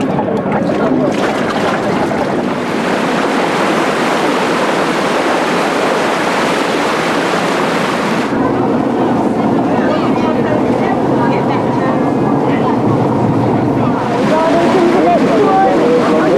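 Steady wind and sea noise aboard the motor ship Oldenburg under way, with water rushing in the wake and wind on the microphone. The sound changes abruptly in tone about a second in, about eight seconds in and again near the end.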